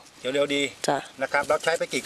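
People talking in Thai during an outdoor interview, with short back-and-forth phrases and brief pauses between them.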